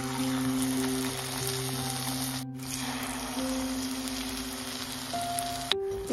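Batter-coated spinach leaves frying in hot oil in a kadhai: a steady sizzle that cuts out briefly about halfway through, with soft background music underneath.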